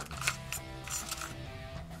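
Background music with held tones, over a few light, sharp clicks in the first second of used double-edge razor blades knocking together as fingers pick through a plastic tub of them.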